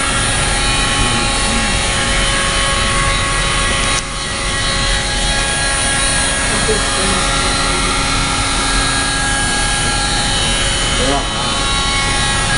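Handheld electric heat gun running steadily, its fan blowing hot air into the end of a rigid plastic suction hose to soften it for a hose barb. There is a brief dip in the sound about four seconds in.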